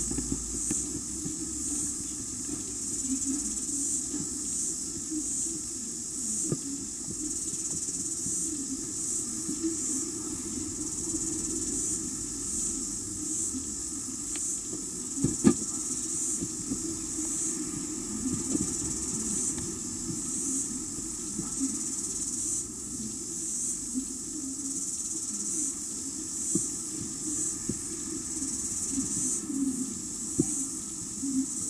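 A steady, high-pitched, slightly pulsing chirring of insects, typical of crickets, over a low rumble, with one sharp tap about halfway through.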